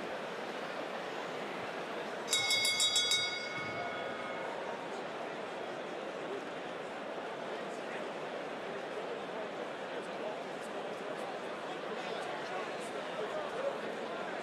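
Arena crowd murmuring steadily. About two seconds in, a boxing ring bell is struck rapidly many times for about a second, its metallic ring fading away.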